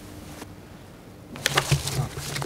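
Quiet room tone with a faint steady electrical hum. About one and a half seconds in, a louder low hum comes up with several knocks and rustles as papers are handled at a live microphone.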